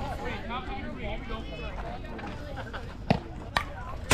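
Spectators and players talking in the background, several voices overlapping, with two sharp knocks about three seconds in, half a second apart.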